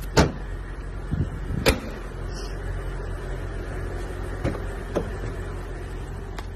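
Car body handling: two loud sharp knocks about a second and a half apart, then a few softer clicks, over a steady low hum. They fit the trunk being closed and a rear door being opened on a Mercedes-Benz saloon.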